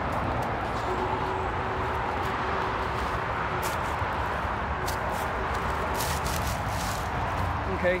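Steady noise of road traffic going by, even and unbroken, with a faint steady hum in it. A few brief crunches or rustles come from footsteps through the brush in the middle.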